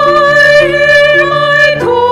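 A woman singing a long held note with a slight vibrato to grand piano accompaniment, moving down to a lower note near the end.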